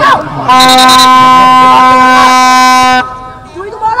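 A horn blown in one long, loud, steady blast of about two and a half seconds, starting and cutting off abruptly.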